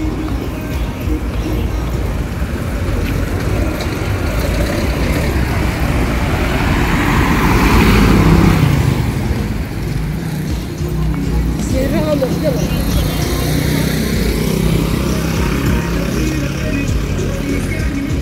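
Roadside traffic: a motor vehicle passes close by, loudest about eight seconds in, over a steady street hum. In the second half, music plays in the distance.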